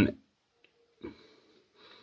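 A man's short breath about a second in, then a fainter breath near the end, after the tail of a spoken word.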